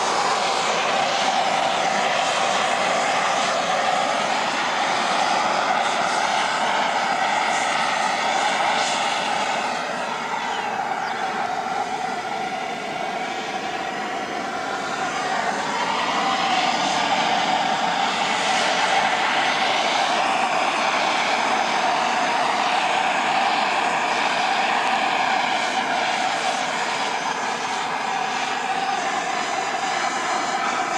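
Handheld propane torch burning with a steady roar as it scorches the surface of a chainsaw-carved wooden sculpture to darken and colour the wood. The roar wavers slowly and eases a little partway through as the torch is moved.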